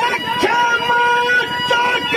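A man singing Haryanvi ragni through a PA in a high register, holding long notes and sliding between them, with musical accompaniment.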